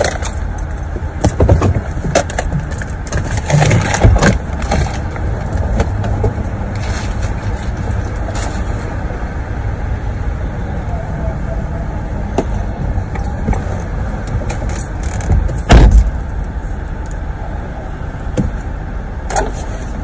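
Low steady rumble of a running car heard from inside the cabin, with scattered knocks and handling sounds. One loud thump about sixteen seconds in.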